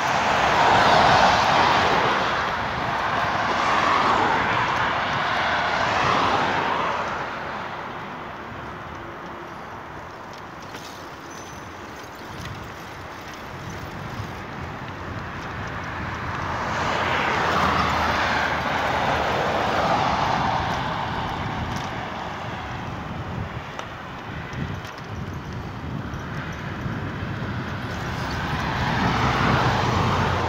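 Cars passing on the road alongside, the hiss of their tyres swelling and fading several times, with quieter stretches in between.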